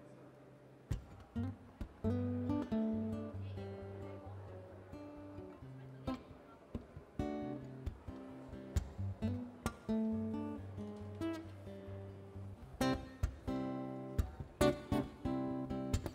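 Steel-string acoustic guitar with phosphor bronze strings playing solo: picked chords and single notes over a bass line, starting about a second in, with a flurry of sharp strums near the end.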